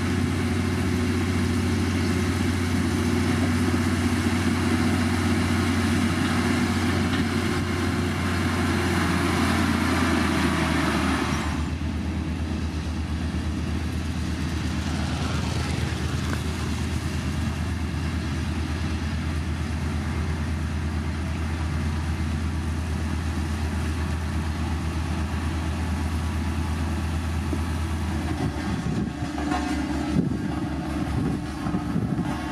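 Diesel engine of a LiuGong motor grader running steadily under load with a deep drone. Gravel scrapes and rattles under the blade for about the first eleven seconds, then cuts off suddenly, leaving the engine alone.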